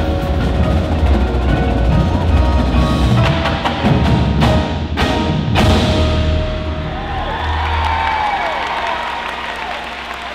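Indoor percussion ensemble playing marimbas, mallet keyboards, drums and cymbals together, with three sharp accented hits about four and a half to five and a half seconds in. After that the drumming thins out, and sustained ringing tones with a sliding pitch carry on as it gets quieter.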